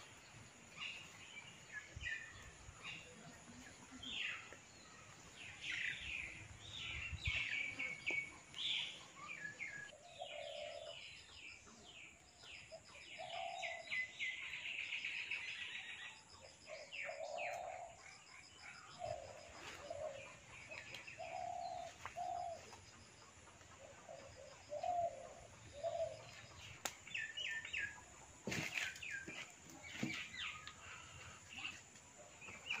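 Birds chirping in short high calls, with a lower short call repeating every second or two from about ten seconds in.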